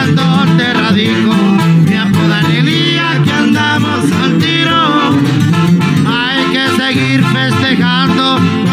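Live regional Mexican band music: a man sings long, wavering held notes into a microphone over a strummed twelve-string acoustic guitar and a tuba bass line.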